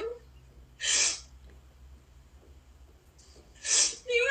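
A person taking two short, sharp, noisy breaths, about three seconds apart.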